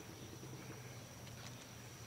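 Faint outdoor background sound with a thin, steady high-pitched tone and a few soft clicks about one and a half seconds in.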